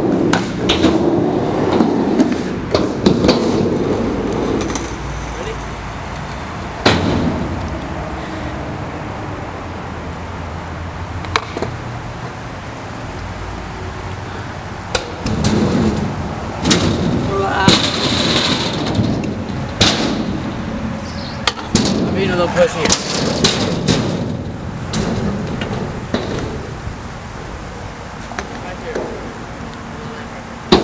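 Stunt scooter riding on a concrete skatepark: wheels rumbling over the concrete, with sharp clacks and bangs of the scooter landing and hitting the ramps, a few early on and a busy run of them in the second half, one with a scraping hiss.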